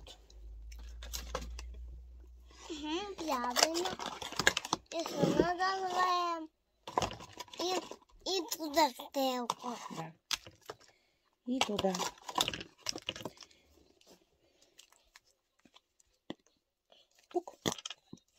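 Mostly speech: a voice talking in three short spells, with small clicks and rustles in between. It goes quiet for the last few seconds except for a few faint clicks.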